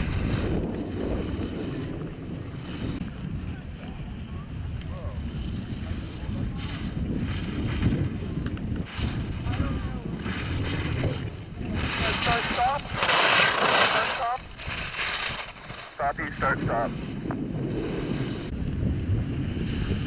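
Wind buffeting the microphone with a steady low rumble, and the hiss of slalom skis scraping across hard snow as racers pass close by, loudest about two-thirds of the way through.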